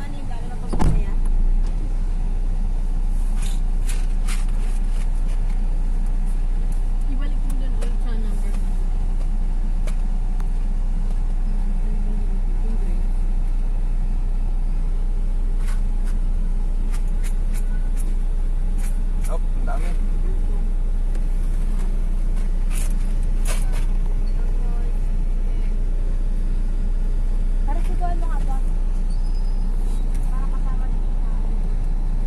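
Steady low rumble of a vehicle heard from inside its cabin, with a single knock about a second in.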